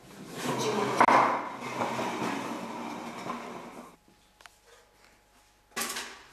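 Scraping and knocking as a wooden stool and large plastic tubs are shifted across a tiled floor. The scraping lasts about four seconds, with a sharp knock about a second in, followed by a short clatter near the end.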